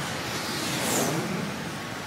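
Road traffic: cars driving along a busy street, one passing close with a rush that swells about a second in and fades.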